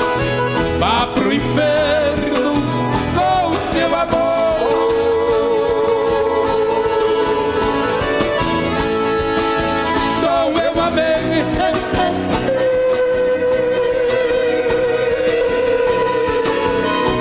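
Live sertanejo band music, with guitars over a steady beat and a long, wavering melody note held twice.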